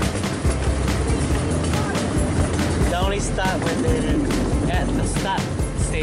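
Steady low rumble and rattle of a zoo's miniature ride-on train car rolling along its track, with music and a voice over it.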